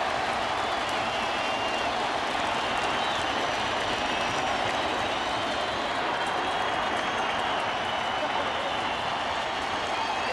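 Baseball stadium crowd cheering and applauding, a steady wash of clapping and voices that holds at the same level throughout.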